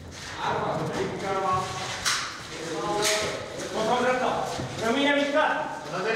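About four short shouted commands from men of an armed tactical team, echoing in a large bare concrete room, with footsteps and scuffs on the hard floor between them.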